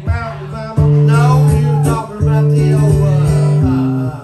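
Acoustic guitar playing with a man singing over it. About a second in it gets louder for two long held passages.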